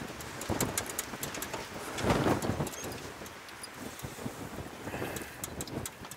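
Small, light clicks and ticks of jewelry wire being twisted and bent by hand into a ring, with a brief rustle about two seconds in.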